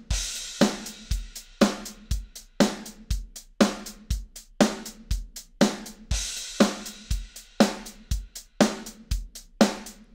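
Sampled drum kit from the MT-PowerDrumKit plugin playing a MIDI beat of kick, snare and hi-hat in a steady groove, with a crash cymbal at the start and again about six seconds in. The MIDI timing is humanized with velocity humanization off, so the hits drift slightly off the grid, a difference described as subtle but definitely there. The beat stops at the very end.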